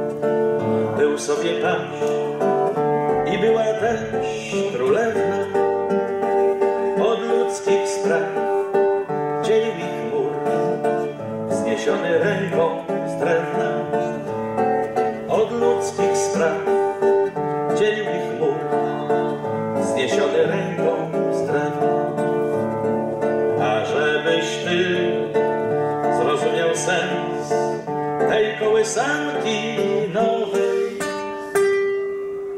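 Nylon-string classical guitar played by hand, picked chords in a steady rhythm.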